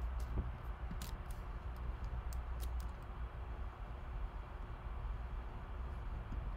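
A few faint clicks from a laptop's trackpad or keys, scattered through the first three seconds, over a steady low hum of room tone.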